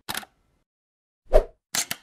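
Intro-animation sound effects: a brief soft hit at the start, a loud short pop with a low thump a little past halfway, then two quick clicks near the end, with silence between.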